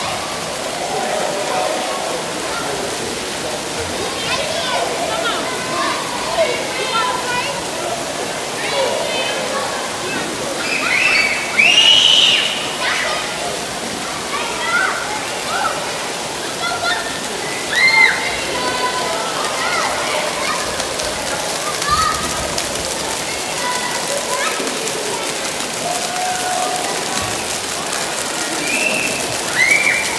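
Steady hiss of water jets and fountains spraying into a shallow splash pool, with children's shouts and high squeals over it; the two loudest squeals come about twelve and eighteen seconds in.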